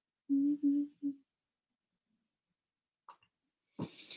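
A woman humming three short notes at a steady pitch, then quiet; a breath just before the end.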